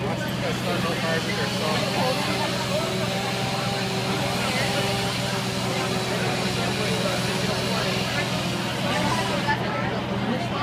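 Fire trucks' engines running with a steady low drone, under the unintelligible chatter of a crowd of onlookers.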